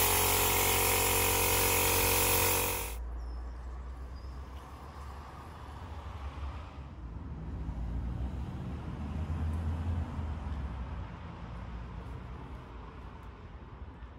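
HVLP spray gun spraying ACF50 anti-corrosion fluid: a loud, steady hiss with a steady hum under it that cuts off abruptly about three seconds in. A much quieter, uneven low rumble follows.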